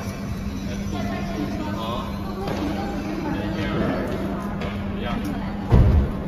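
Background voices talking over a steady low hum, with a brief, heavy low thump near the end.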